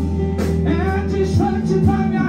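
Live Brazilian gospel worship music: a male singer over a band of electric guitars, bass and keyboard playing steady sustained chords.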